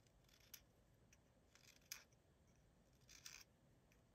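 Small Opinel No. 5 knife blade shaving wood off a red cedar pencil: a few faint, short scraping cuts about a second apart, one a sharper tick near the middle.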